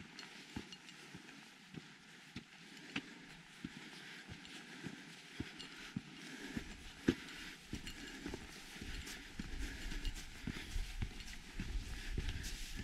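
Footsteps of a hiker walking on a dirt trail, steady steps somewhat under two a second. A low rumble comes in past the middle and grows toward the end.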